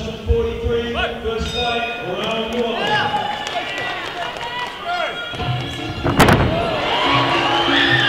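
Crowd voices shouting over background music at a Muay Thai fight, with one sharp impact, likely a strike landing, about six seconds in.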